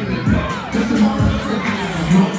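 Hip-hop track played loud through a club sound system, with deep bass kicks and a sustained bass note, and a crowd shouting and cheering over it.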